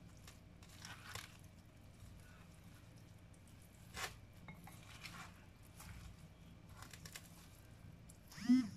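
Faint, soft sounds of bare hands mixing raw shrimp, potato chunks and herbs in a bowl, with a few light knocks and rustles. The clearest comes about four seconds in.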